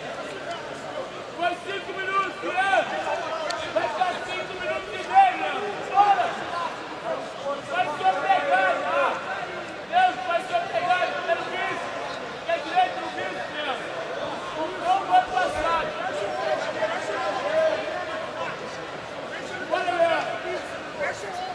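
Several people shouting in an indoor sports arena, raised high-pitched calls one over another above the crowd's murmur.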